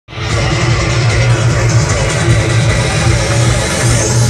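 Loud electronic dance music with heavy pulsing bass, played through a large DJ truck's speaker stack; it starts abruptly at the very beginning.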